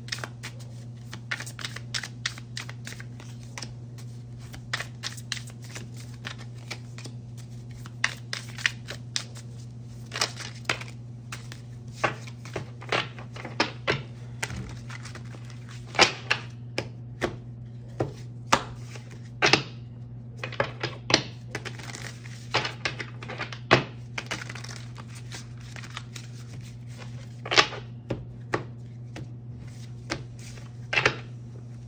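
Tarot cards shuffled by hand: a long run of quick card clicks and riffles, broken by a few louder sharp snaps as cards are slapped down, about four times. A steady low hum runs underneath.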